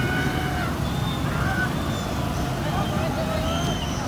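Amusement-park crowd ambience: scattered distant voices and brief calls over a steady low rumble.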